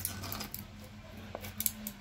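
Faint clicks and crackles from a plastic squeeze bottle being pressed as lotion streams into a bowl, a few at the start and a couple more after a second, over a low steady hum.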